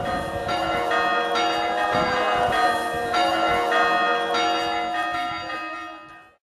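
Church bells ringing, a new strike about twice a second, each leaving a long ring of several pitches, fading out near the end.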